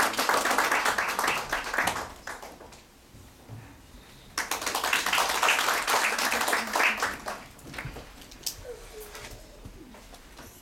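Audience applause in two rounds: the first dies away about two seconds in, the second rises about four seconds in and fades out roughly three seconds later.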